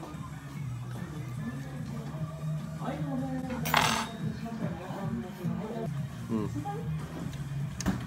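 Restaurant room sound: a steady low hum with a murmur of voices and background music, and one brief clink of tableware about four seconds in. A short "mm" of enjoyment from the diner near the end.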